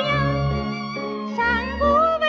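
A woman singing a 1940s Mandarin popular song with small orchestra accompaniment, from an old 78 rpm shellac record. A held, wavering note ends at the start, bass notes come in under a short pause in the melody, and the melody climbs to a new held note near the end.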